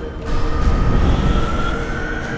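Film soundtrack: a tense music score under a heavy low rumble that swells about a third of a second in, with a slowly rising whine, the engine sound of a hovering VTOL dropship.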